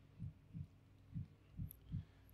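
Quiet room tone with a faint steady low hum and about five soft, low thumps at uneven intervals.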